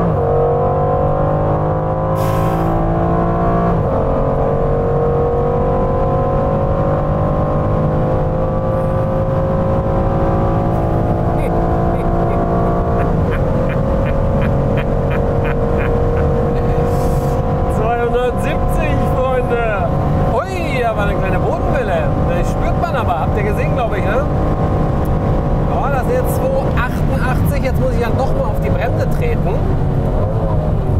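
Aston Martin Vantage F1 Edition's AMG twin-turbo V8 pulling at full throttle, heard inside the cabin. The pitch climbs steadily, drops at an upshift about 4 s in and again about 13 s in, then keeps rising slowly in the top gears.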